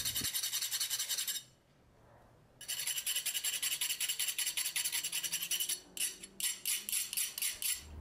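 Steel wool scrubbed rapidly back and forth over a freshly hardened copper-Damascus knife blade, giving a quick, even scratching. It stops for about a second early on, then resumes, with the strokes growing sparser near the end.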